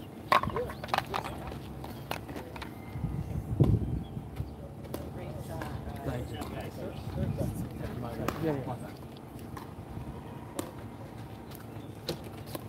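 Indistinct voices of people talking, with scattered sharp clicks and knocks, the loudest about a third of a second in and again between three and four seconds in.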